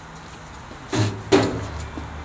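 Metal lid of a gas barbecue swung shut, landing with two knocks about a second in, a third of a second apart.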